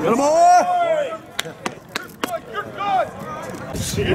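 A person's long shout for about the first second, its pitch rising and then falling, followed by four sharp clicks in quick succession and a couple of short calls.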